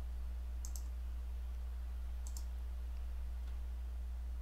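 Computer mouse clicks: two sharp press-and-release clicks about a second and a half apart, then a couple of fainter ticks, over a steady low electrical hum.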